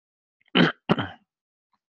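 Throat clearing: two short, harsh bursts about a third of a second apart, about half a second in.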